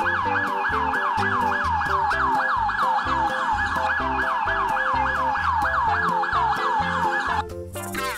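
Electronic toy police siren from a toy police motorcycle: a loud, rapid warble of falling sweeps, about four a second, that cuts off shortly before the end. Background music with a steady beat plays underneath.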